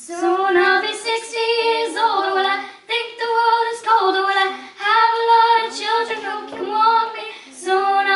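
Two young girls singing into microphones: sung phrases with held notes and short breaks for breath between them.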